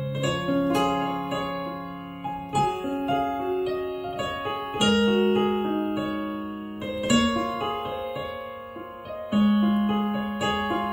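Piano playing a slow instrumental passage with no voice. A low chord is struck about every two and a half seconds and left to ring under a gently moving melody.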